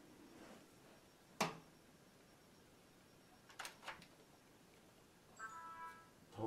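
A sharp click about a second and a half in and two softer clicks a couple of seconds later, then a short electronic chime near the end: the computer's sound for a USB device being connected, here the SVBONY 305 astronomy camera being plugged in.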